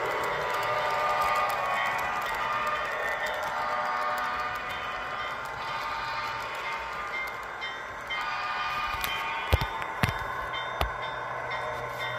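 Model train freight cars rolling along the track, with a running whine and a stream of small clicks from wheels on rail joints. Three sharp knocks come near the end.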